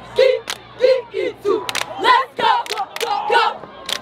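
Cheerleading squad chanting a sideline cheer in unison: short shouted syllables at about two a second, punctuated by several sharp hand claps.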